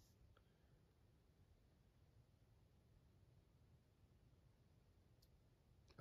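Near silence: faint room tone, with two tiny clicks, one just after the start and one near the end.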